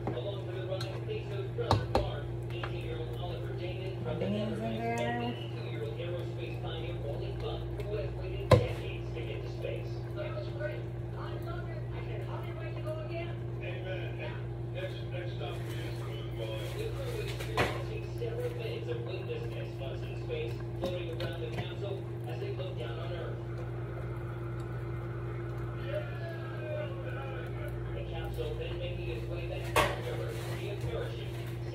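Kitchen cooking sounds over a steady low hum: a few sharp knocks of a utensil or can against a cooking pot, the loudest about eight seconds in, with faint voices in the background.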